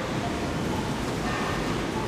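Steady, even background hiss of a large store's interior, with no distinct events.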